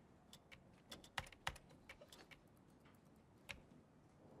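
Laptop keyboard keys pressed now and then: faint, irregular single clicks, with the loudest couple just over a second in and one more about three and a half seconds in.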